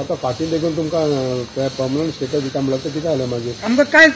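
A man speaking, over a steady background hiss.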